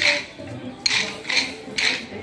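Many pairs of short wooden kolatam sticks clacked together by a large group of stick dancers, each strike a slightly spread clatter because the dancers are not quite in unison. The clatters come in a steady rhythm, roughly one every half second.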